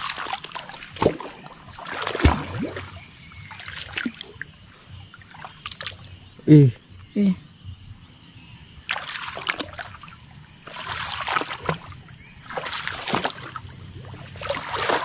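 Splashing and rustling in several uneven bursts, as of someone wading through shallow marsh water and wet grass, with faint high chirps above.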